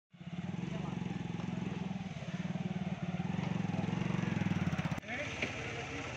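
A motor vehicle engine running steadily close by, with a fast even pulse, until it breaks off about five seconds in; after that, voices over a quieter engine.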